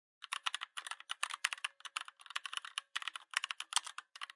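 Computer keyboard typing sound effect: a quick, irregular run of key clicks, several a second, laid under on-screen text being typed out.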